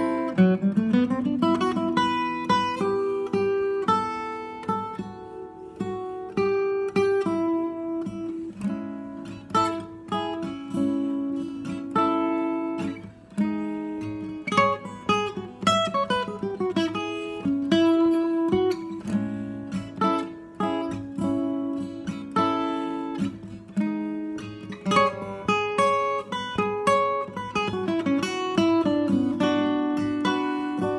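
Solo steel-string acoustic guitar playing an instrumental tune: plucked chords with melody notes picked over them.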